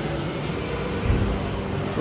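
Steady background hum of a large indoor space, with a short low thump about a second in.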